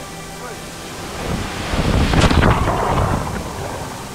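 A person plunging into a waterfall pool from the cliff: rushing water swells from about a second in to a sharp splash just after two seconds, then dies away.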